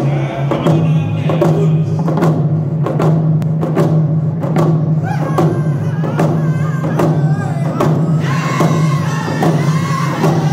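Round dance hand drums (rawhide frame drums) beaten together in a steady, even beat, about two strokes a second. Men's voices sing over the drums in a round dance song, growing louder and higher about eight seconds in as the whole group sings out.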